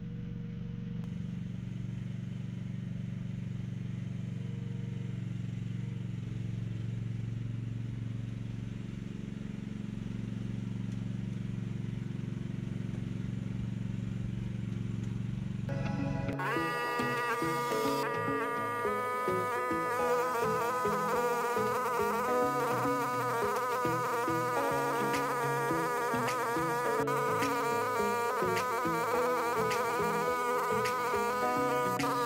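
The small gasoline engine of a mini excavator runs steadily as the machine drives out of a shed. About halfway through it cuts abruptly to background music with a buzzy tone and shifting chords.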